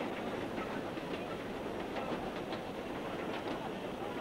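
Steady hiss of an old 1960s broadcast sound track, with a few faint clicks.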